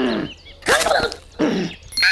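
A cartoon bunny's wordless vocal sounds: two short calls with swooping pitch, about half a second apart, the first led by a brief whoosh.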